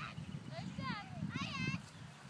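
Children's high-pitched calls and shouts in the distance, several short swooping cries over two seconds, over a low rumble.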